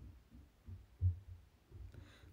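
A few soft, irregular low thumps, the strongest about a second in.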